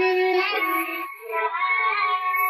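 High-pitched female pop singing over music, with a short break a little past the middle.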